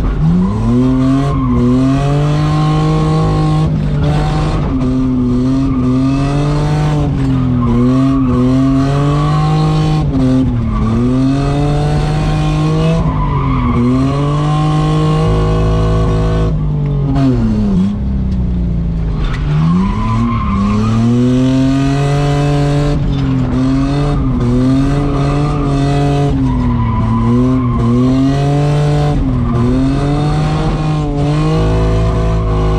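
Heard from inside the cabin, a Nissan Skyline R33's engine revs up and down in repeated cycles about every two seconds while the car drifts, with a deeper drop and climb about two-thirds of the way through. Tyre squeal runs under the engine.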